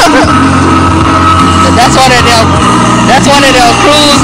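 Loud recorded music playing over a sound system, with a bass line that steps between held notes and a singing voice on top.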